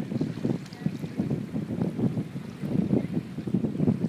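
Wind buffeting the microphone: an uneven low rumble that rises and falls in gusts, over small waves washing in the shallows.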